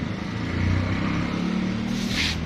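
Low, steady engine hum of a motor vehicle, swelling a little about half a second in.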